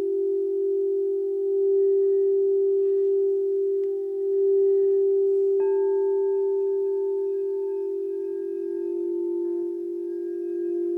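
Frosted quartz crystal singing bowls ringing: one low bowl holds a steady, gently swelling tone, and a little over halfway through a second, higher bowl is struck and sings along with it.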